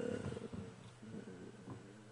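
A man's low, drawn-out hesitation 'euh' trailing off about half a second in, then a quiet pause with faint room tone.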